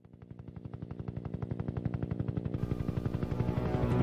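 A 'chopper' sound effect: a fast, even train of beats, about ten a second, fading in from silence, growing steadily louder and cut off abruptly.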